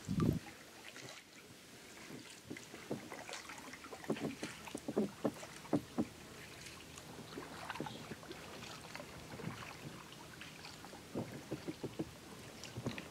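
Kayak paddle strokes close to the microphone, with irregular splashes and drips of river water. There is a low thump right at the start.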